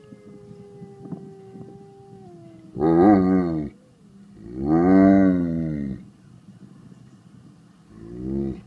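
A wolf howl playing from a computer's speakers, one thin held note that sags slightly at its end, answered by a dog howling along twice, loudly, about three and five seconds in.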